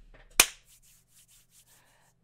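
A single sharp hand clap, just under half a second in.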